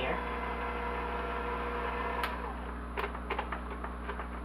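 Electric hand mixer motor running steadily at low speed with its beaters lifted out of the batter, stopping with a click about halfway through. A few sharp clicks and knocks follow as the beaters are taken out of the mixer.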